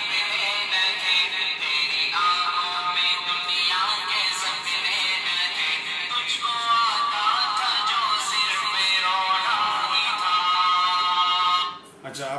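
Recorded chanted singing played from the smart Quran pen's small built-in speaker in MP3 player mode, thin and limited in its highs. The singing changes abruptly about two seconds in and again past six seconds, then cuts off suddenly just before the end.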